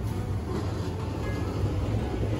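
Low, steady rumble of street traffic, with soft background music under it.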